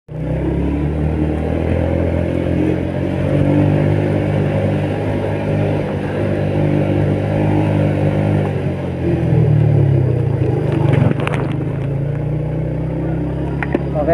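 Yamaha Vega underbone motorcycle's single-cylinder four-stroke engine running steadily while it carries a load uphill. The engine note rises about nine seconds in, and a few sharp clicks follow a couple of seconds later.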